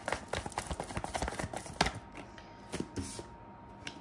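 Tarot cards being handled over a marble tabletop: a quick run of small card clicks for about two seconds with one sharper snap near the middle, then a few soft taps as a card is drawn and set down.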